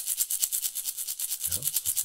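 A single leather-covered maraca shaken from the wrist, its beads rattling in a fast, even rhythm of short strokes.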